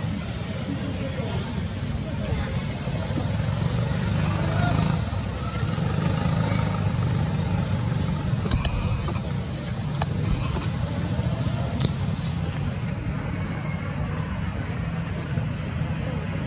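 Steady low outdoor rumble with faint, indistinct voices in the background.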